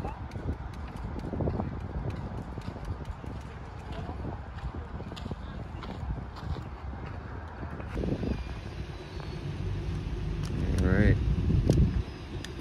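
Indistinct voices of a group of people talking, over a steady low rumble. One voice calls out loudly near the end.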